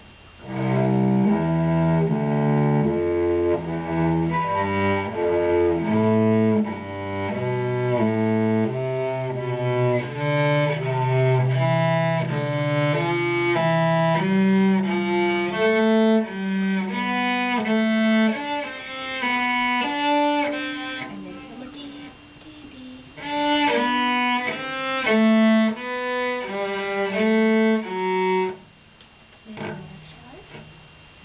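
Cello being bowed by a student, playing a run of separate sustained notes one after another. The lowest notes come first. It pauses briefly about two-thirds of the way through, resumes, and stops shortly before the end.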